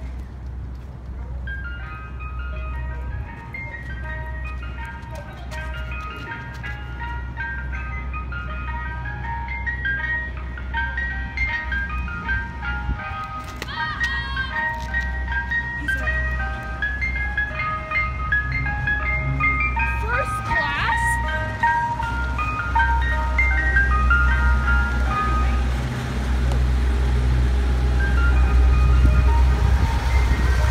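Soft ice cream truck's chime playing a jingly melody of short notes, growing louder as the truck approaches, with its engine rumbling underneath.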